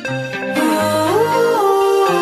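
Background music with a melody line that slides up and then back down about a second in.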